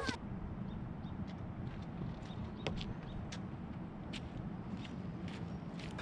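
Outdoor street ambience: a steady low rumble with faint, scattered bird chirps and a few light clicks.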